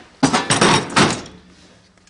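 A hard plastic tool case being grabbed and shifted, a sudden clunk and rattle that comes again about a second in, then dies away.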